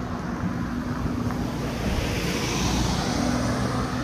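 A road vehicle passing close by: engine hum and tyre noise build up through the middle and ease near the end.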